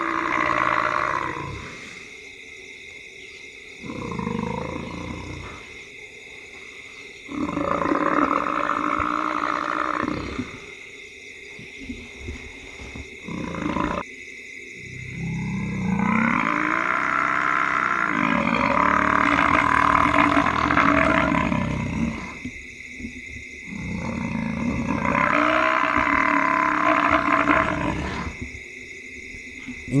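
A Cape buffalo bull bellowing in distress as lions hold it down, about six long, moaning bellows separated by short pauses. The longest rises and falls in pitch near the middle. These are the calls of a mortally wounded buffalo.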